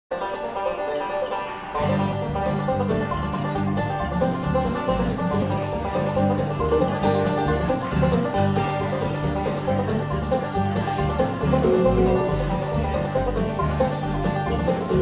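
Bluegrass band playing: banjo picking with mandolin, acoustic guitar and upright bass. The bass notes come in about two seconds in.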